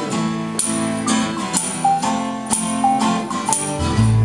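Live rock band playing a song's instrumental opening: guitar chords over a percussion hit about twice a second. The bass comes in strongly at the very end.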